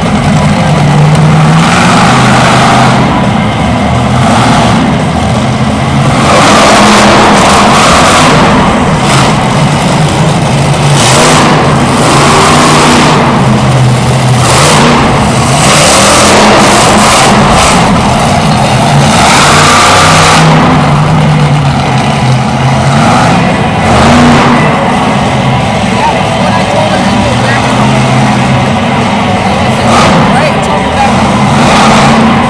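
Monster truck engine, a supercharged big-block V8, revving hard in repeated rises and falls as the truck drives across the arena floor and climbs over crushed cars.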